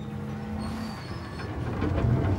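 Riverboat sternwheel paddlewheel and its driving machinery running, a low mechanical rumble over a steady hum. The rumble grows louder in the second half.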